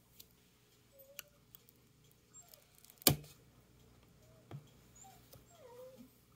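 Wire soap cutter drawn down through a soap loaf, with a sharp click about three seconds in and a smaller one a second and a half later. Faint short whines that glide in pitch come and go around them.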